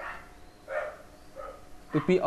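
A pause in a man's speech, with soft breathy sounds from the speaker: one short breath-like sound a little under a second in and a fainter one about halfway through the remaining time.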